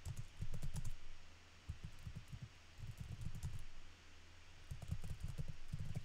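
Computer keyboard typing in several short bursts of keystrokes with pauses between.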